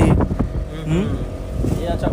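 Boat engine running steadily with wind on the microphone, under quiet talk.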